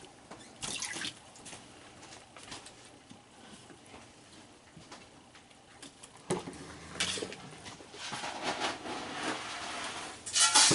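Raccoons dabbling in shallow water in a plastic kiddie pool, with light drips and scattered small clicks. From about six seconds in there is a sharp clatter, then a rattling that builds toward the end: dry dog food poured into a pan, a noise that sends the raccoons running.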